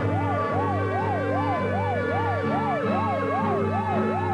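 An emergency-vehicle siren yelping, its pitch rising and falling about three times a second, over steady held background music.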